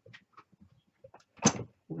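A few faint handling clicks, then a single sharp knock about one and a half seconds in, as things are moved while hunting for a misplaced heat gun.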